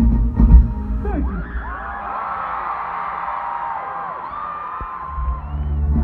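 Stadium concert crowd screaming and cheering, many voices whooping in rising and falling glides, while the live band's loud, bass-heavy music drops out after about a second and comes back in near the end.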